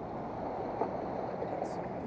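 Steady wash of sea water against a rock breakwater, an even rushing noise with no distinct strokes or knocks.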